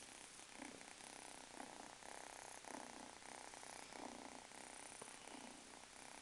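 A calico kitten purring softly, the purr swelling and fading with each breath about once a second.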